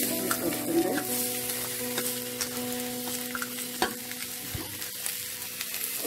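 Sliced onions sizzling as they fry in a steel pot, with scattered crackles and clicks.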